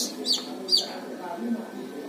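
Chicks of the Thai fighting-chicken breed (ayam bangkok) peeping: a few short, high, downward-sliding cheeps in the first second, then quieter.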